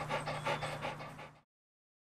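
English foxhound panting quickly, about seven breaths a second, over a low steady hum; the sound cuts off abruptly about one and a half seconds in.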